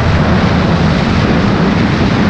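Loud, steady rush of wind buffeting an action camera's microphone as a skier runs downhill through deep powder, with the skis hissing through the snow.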